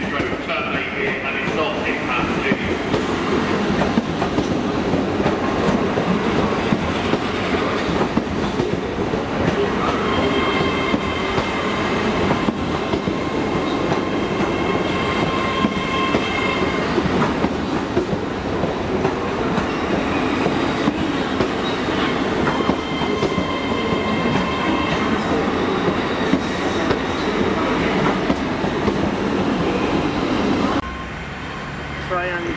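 A long GWR Hitachi Intercity Express Train rumbling slowly past along the platform, wheels clattering on the track. A high, steady squeal rises over the rumble twice, from about ten to seventeen seconds in and again around twenty-two to twenty-five seconds.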